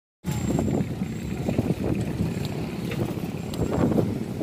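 Wind buffeting a phone microphone carried on a moving bicycle: a rough, fluctuating low rumble.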